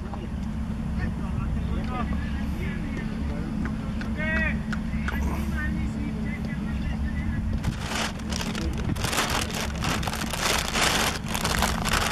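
Outdoor ambience: a steady low rumble with a few faint distant voices calling out. From about eight seconds in comes a rough, uneven crackling hiss.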